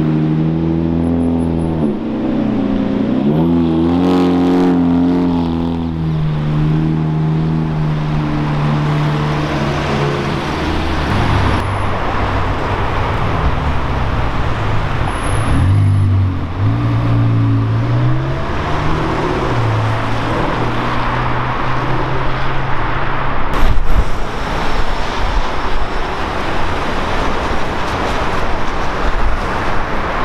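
Supercar engines in street traffic, cut from car to car: a Lamborghini Murciélago's V12 revving, its pitch dipping and then climbing a few seconds in. Later a McLaren 720S's twin-turbo V8 runs past at a lower note, followed by general traffic and tyre noise with a couple of sharp knocks.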